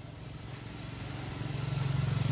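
A motor vehicle's engine running with a steady low hum, growing louder as it approaches.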